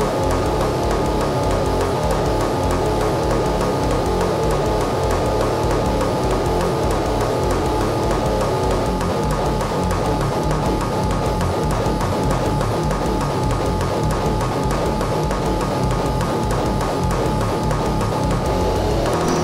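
Heavy metal track with distorted guitars and fast, relentless drumming, loud and unbroken.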